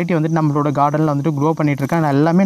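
A man's voice talking continuously.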